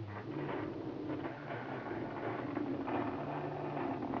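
Hexbug bristle bot's vibration motor buzzing steadily as it crawls over a board of laser-cut acrylic pieces, with a light rattle from the plastic.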